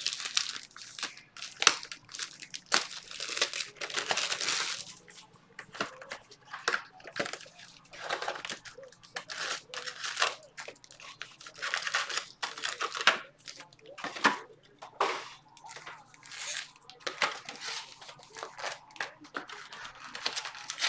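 Plastic wrapping on baseball card boxes and packs crinkling and crackling in irregular bursts as they are handled and unwrapped by hand.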